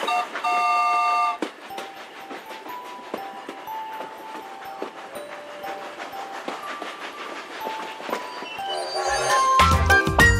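A train sound effect: a whistle sounds a held chord for about a second, then a long, quieter run of wheels clicking on the track. Music swells back in near the end.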